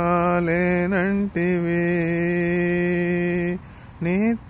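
A man singing a Telugu devotional song solo and unaccompanied, holding long steady notes. A short wavering turn comes about a second in and a quick breath follows; the voice stops shortly before the end.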